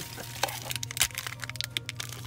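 Plastic and foil blind-bag packaging crinkling and crackling in the hands as it is pulled open, with a few sharper cracks at the start, about half a second in and about a second in.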